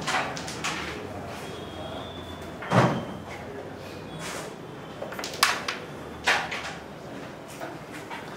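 A carrom shot: about two and a half seconds in there is a dull knock on the board, then near the middle of the clip sharp wooden clicks as the flicked striker hits the carrom men and they knock against each other and the board's frame. A second sharp click follows under a second later.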